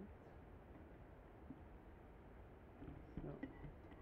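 Near silence: faint low background noise, with one short spoken word near the end.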